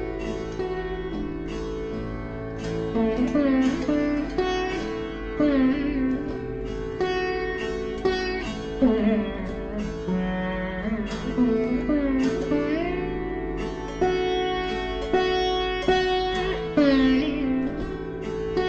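Surbahar (bass sitar) playing alap in Raga Bageshri: single plucked notes, many bent with slow, deep slides in pitch, over a steady ringing drone.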